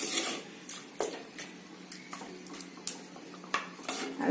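Wooden spatula stirring chicken through a thin, watery masala in a clay pot, with irregular scrapes and knocks of the wood against the pot's sides and some wet sloshing.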